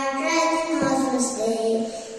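A young girl singing solo into a microphone, holding long notes that step to a new pitch a few times.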